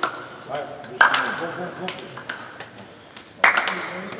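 Men's voices talking in an echoing sports hall, with a few sharp hand claps and slaps as players shake hands, the loudest about a second in and near the end.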